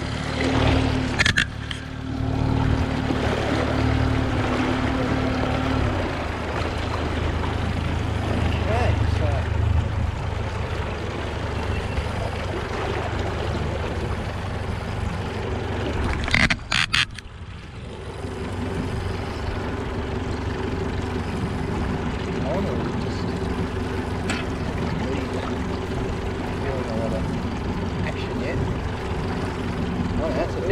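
Honda four-stroke outboard motor running with the boat under way, with water rushing past the hull and wind on the microphone. The engine note shifts about six seconds in and again after about eighteen seconds, and a couple of sharp knocks come just before the second change.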